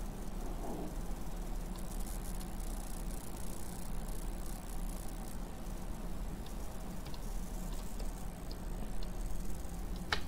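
Steady low electrical hum of a desk microphone's background, with a few faint computer-mouse clicks in the second half and a sharper click at the end.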